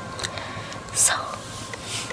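Speech only: a woman says a single soft "so" about a second in.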